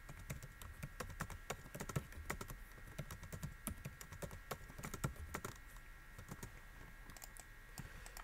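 Typing on a computer keyboard: quick, irregular key clicks, thinning out over the last two or three seconds.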